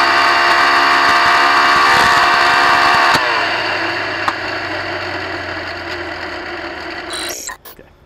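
Twin-turbocharged LS-based V8 of a land-speed car running hard at steady high revs, recorded on board. About three seconds in, the engine note cuts off and a falling, fading rush follows as the car coasts down.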